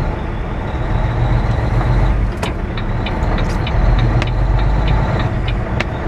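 Semi truck's diesel engine running low and steady, heard from inside the cab as the truck pulls slowly away. From about halfway through, a regular clicking comes in at about three clicks a second.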